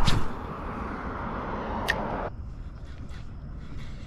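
Road traffic from a passing car, a steady rush that stops abruptly a little after two seconds in. It comes with a sharp click at the very start and another about two seconds in.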